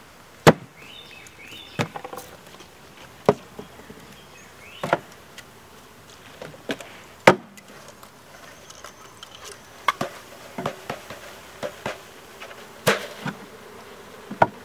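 A wooden package of honey bees being knocked and shaken to tip the bees into the hive: about a dozen sharp knocks at uneven intervals, over the steady buzzing of the disturbed bees.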